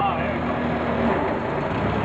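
Nissan forklift running steadily with its engine noise even throughout, and a faint steady hum that drops out about a second in.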